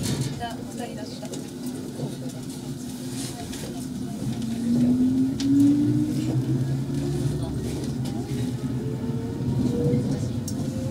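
JR East 115 series electric multiple unit pulling away from a standstill. The whine of its MT54 traction motors rises steadily in pitch from about halfway through as the train picks up speed, over a low running rumble.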